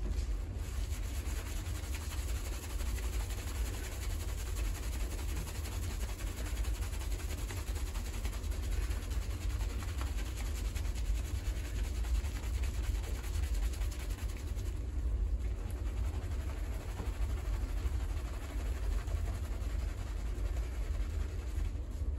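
Hands vigorously scrubbing a thickly shampoo-lathered scalp: continuous wet squishing and crackling of the foam, with a steady low rumble underneath.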